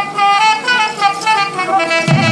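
Nadaswaram, the South Indian double-reed wind instrument, playing a melody of held notes that step up and down in pitch. No drums sound under it until the very end.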